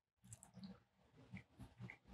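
Near silence with a few faint, brief chewing and mouth sounds from a person eating close to a microphone.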